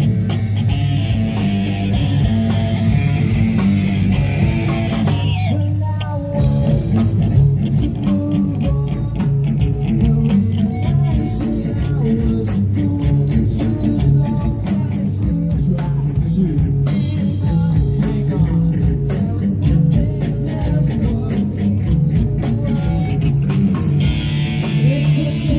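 Live rock band playing electric guitars and a drum kit, with a singer on microphone. The texture changes briefly about five seconds in before the full band carries on.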